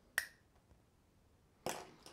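A single sharp metallic click with a brief ring, from the torn-off aluminium pull-ring cap of a glass energy-drink bottle, then a short, softer noise near the end.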